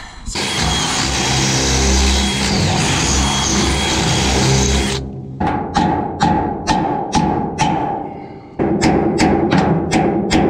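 Power drill running hard as it drills into a seized steel hydraulic-ram pivot pin, stuck because it is badly bent and worn; it cuts off suddenly about halfway through. Then comes a series of sharp, ringing knocks, about two a second and quickening near the end.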